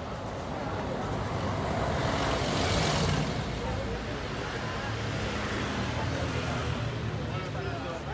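Road traffic: a vehicle goes by, its noise swelling to a peak about three seconds in and then fading, over a steady low hum.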